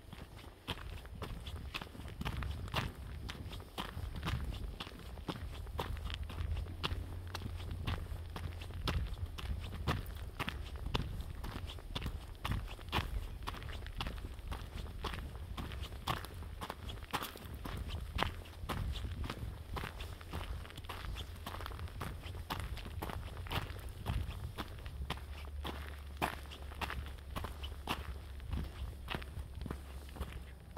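Footsteps of a person walking at a steady pace along a gravel path, about two steps a second, over a low rumble.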